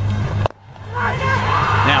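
Cricket broadcast sound with a steady low hum under it. About half a second in comes a sharp knock, a cricket bat striking the ball, and a commentator starts speaking near the end.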